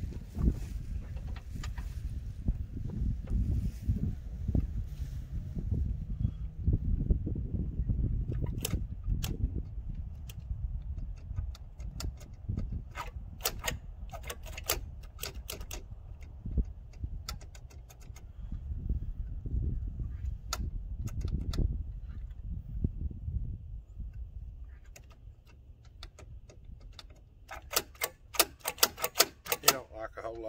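Scattered sharp clicks and taps of hands working the tiller handle and its throttle cable fittings, with a quick run of clicks near the end, over a low rumble that dies away late on.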